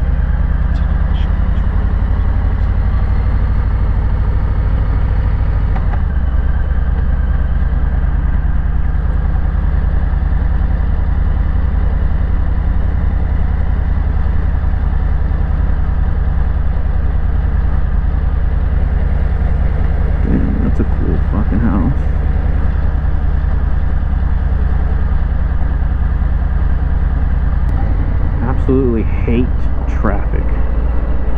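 Harley-Davidson Low Rider S's Milwaukee-Eight V-twin running steadily under way at low road speed; the engine note changes about six seconds in and again near the end.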